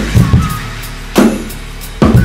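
TAMA drum kit with MEINL cymbals played along to a hip-hop backing track: a couple of quick drum hits at the start, then a loud accented hit with cymbal about a second in that rings out.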